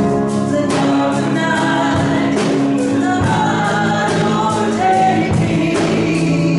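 Live worship music: voices singing a contemporary worship song together over a band with a steady drum beat.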